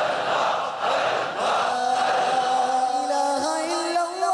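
A large crowd of men chanting dhikr together. About two seconds in, a single voice takes over, holding a long, slowly bending note in a devotional chant.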